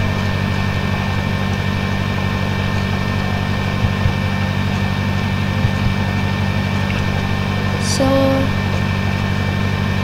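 Steady low hum with hiss over it, the background noise of a home recording set-up, with two faint clicks about four and six seconds in.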